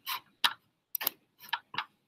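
Computer mouse clicking: about six short, sharp clicks at an uneven pace while the screen is switched out of a slideshow.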